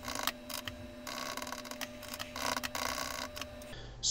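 Computer keyboard keys pressed in a series of short clicks, some in quick runs, as a boot menu is stepped through with the keys.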